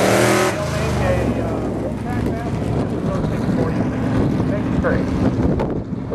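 Drag car engine at full throttle off the starting line, cut back sharply about half a second in. It then runs on at light throttle as the car cruises away down the strip.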